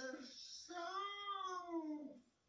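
A cartoon cuckoo's call slowed to a quarter of its speed and played from a TV: a short note, then one long drawn-out call whose pitch rises and then falls.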